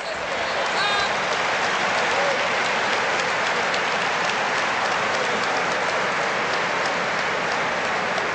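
A large audience applauding: a dense, steady clatter of many hands clapping that builds over the first second and then holds level. A single voice calls out briefly about a second in.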